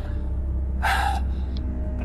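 One sharp gasping breath from a person, about a second in, over a low steady drone of background music.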